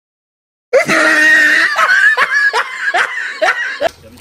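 A burst of loud laughter, a quick run of 'ha's, starting under a second in after a brief silence and dying away near the end.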